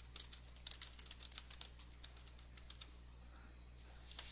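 Computer keyboard typing: a quick run of keystrokes that stops about three seconds in.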